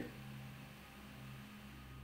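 Faint steady low hum with soft hiss, a pause between spoken lines: near-silent background tone.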